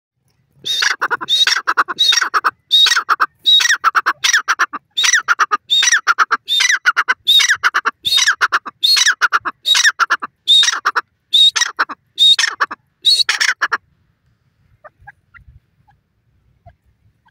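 Grey francolin (teetar) calling: a long run of loud, harsh repeated notes, a little more than one a second. The run stops about two seconds before the end.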